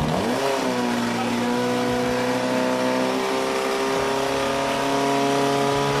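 Portable fire pump's engine revving up just after the start, then running at a steady high speed while it pumps water out to the hose lines.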